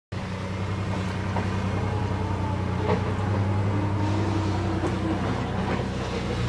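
1963 Chevrolet pickup's engine running steadily, heard from inside the cab, with a few light clicks.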